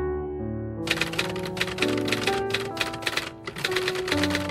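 Typewriter keys clacking in quick, irregular strokes, starting about a second in, over piano music.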